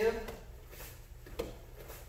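A man's word trails off at the start, then a quiet room with one short, sharp knock about a second and a half in, and a fainter tick just after.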